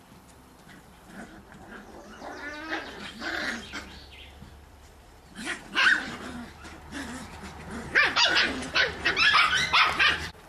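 Cocker spaniel puppies barking and yipping while play-fighting, in short bursts that come thicker and louder near the end.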